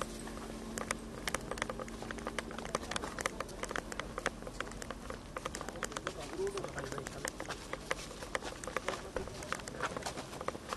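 Footsteps of hard-soled shoes on paving, a rapid, irregular run of sharp taps, over a murmur of voices.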